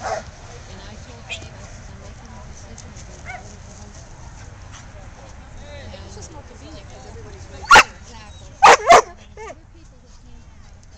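Airedale terrier barking at a helper who is agitating it with a tug in Schutzhund protection work. There are three loud barks: one about three-quarters of the way through, then two in quick succession about a second later.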